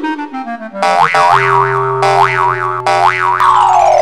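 Cartoon sound effects for an animated subscribe button: a stepped falling run of notes, then warbling pitch glides that swoop up and down over a steady low tone, and a long falling glide near the end.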